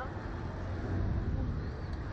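Wind rushing over the microphone of a ride-mounted camera as the Slingshot capsule swings through the air, heard as a steady low rumble.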